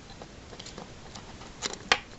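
Small clicks and ticks of a Cat 320DL scale-model excavator's bucket and homemade sheet-metal thumb being worked by hand, with two sharp clicks close together near the end.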